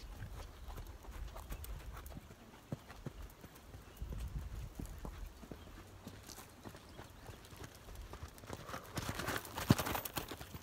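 Hoofbeats of a Tennessee Walking Horse, a scatter of dull knocks. Near the end they grow louder and noisier, with one sharp knock.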